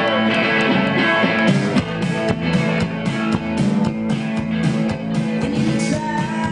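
A live rock band playing an instrumental stretch: electric guitar and bass guitar over a drum kit, with the drum hits becoming prominent about a second and a half in.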